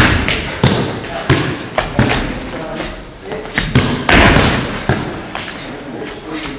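Feet stamping and stepping on a wooden floor during a kung fu form: a string of sharp thuds, the loudest right at the start.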